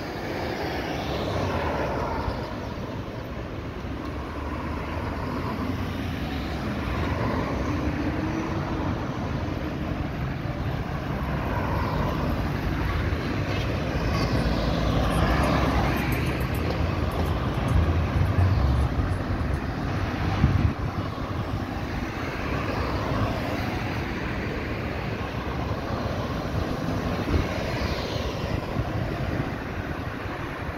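Road traffic: cars driving round a roundabout, each one's engine and tyre noise swelling and fading as it passes, over a steady traffic rumble. The loudest pass comes about two-thirds of the way through.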